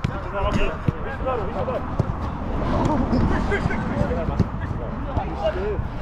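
A football being passed and kicked between players, a few sharp strikes of foot on ball scattered through, under the chatter of players' voices.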